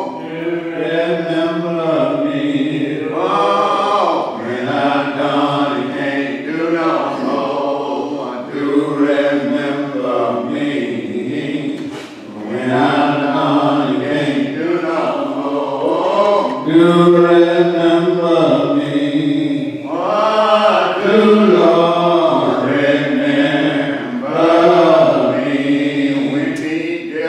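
Voices singing a slow hymn with long, drawn-out held notes.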